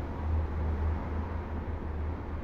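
Outdoor background rumble: a steady noise with a strong, uneven low rumble, a little louder in the first second.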